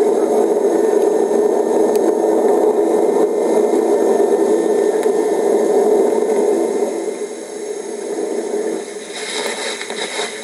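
Natural sound of Ecuador's Tungurahua volcano erupting, played from a news video through computer speakers and re-recorded: a steady, rough noise with no bass, growing quieter about seven seconds in.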